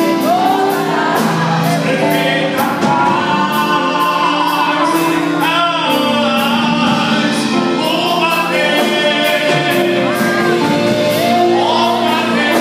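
Live gospel song: two women singing into microphones over electric keyboard and a drum kit, played through a church PA, with a steady drum beat.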